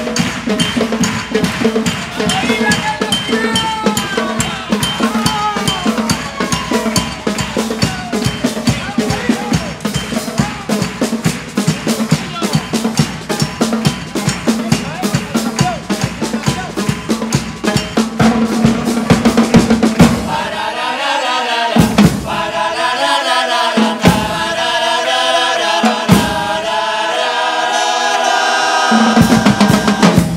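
A charanga-style brass band with bass drum and snare plays live. It opens with fast, busy drumming under the band. About two-thirds of the way through it changes to held brass chords broken by sharp, separate drum hits.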